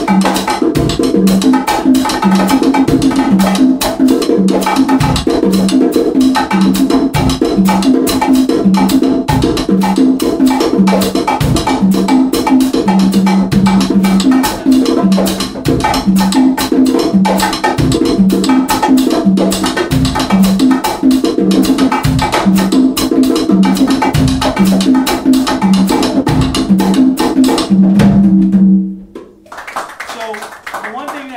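An Afro-Cuban percussion groove in a salsa feel: rapid sharp clicks over a repeating pattern of low drum tones. It stops suddenly about a second before the end.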